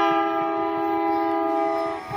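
Train's locomotive air horn sounding one long, steady blast, a chord of several tones, starting abruptly and trailing off after about two seconds.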